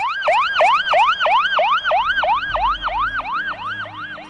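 Emergency-vehicle siren in fast yelp mode, its pitch rising and falling about three times a second.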